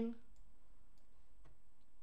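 A few faint, isolated clicks of a computer mouse button.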